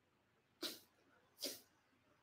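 Two short, breathy puffs of breath from a man, a little under a second apart, like a soft chuckle through the nose.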